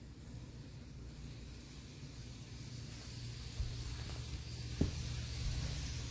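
Tomix Kintetsu 50000 Shimakaze N-scale model train running on its track: a faint, steady rolling noise from its wheels on the rails, with the motor itself very quiet. The noise grows slightly louder about halfway through, and there are two light clicks a little after that.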